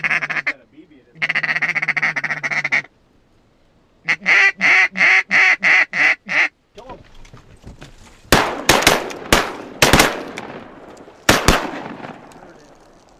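Hand-held duck call blown to imitate a mallard hen: a short blast, a long held quack, then a fast run of about eight descending quacks, to draw mallards in. In the last few seconds, a string of sharp knocks and rustling.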